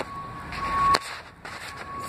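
A high-pitched electronic beep repeating about once a second over steady background noise, with a sharp click about a second in.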